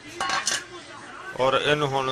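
Pestle knocking and scraping against a stone mortar while wet herbs are ground, a short cluster of sharp clinks in the first half second.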